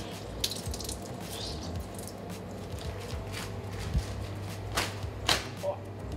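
A wet sheet of baking paper being squeezed out and handled, with a few soft crinkles and drips, over a steady low hum.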